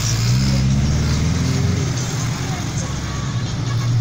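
Car engine running with road noise, heard from inside the cabin while driving, as a steady low hum.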